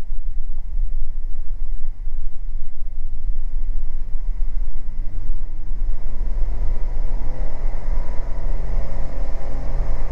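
Twin six-cylinder engines of a Beechcraft Baron G58, heard from inside the cockpit, coming up to takeoff power at the start of the takeoff roll. A steady low rumble gains a growing engine drone over the second half.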